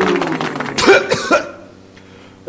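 A man coughing: a drawn-out vocal sound, then a few rough coughs about a second in, as from someone with a cold.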